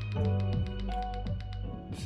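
Lo-fi hip-hop beat with held notes and a steady beat, playing through a Polk MagniFi Mini AX compact soundbar and picked up by a phone's microphone in the room.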